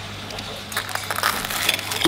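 Knife and fork cutting into a breaded chicken Kiev on a china plate: a quick run of small crackles and clicks from the crumbed crust and the cutlery on the plate, starting a little under a second in.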